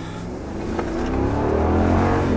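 Ram pickup's 5.7 Hemi V8 accelerating hard, heard from inside the cab, its pitch and loudness climbing steadily from about half a second in. The engine is a new Jasper remanufactured unit running with its cylinder deactivation (MDS) switched off.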